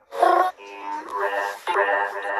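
Electronic music with a synthetic, computer-made singing voice: a short sung note about a quarter second in, then several steady notes held together as a chord, breaking off briefly and starting again near the end.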